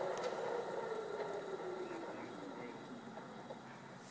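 Asphalt saw's large blade spinning down: a whir that fades steadily and sinks a little in pitch.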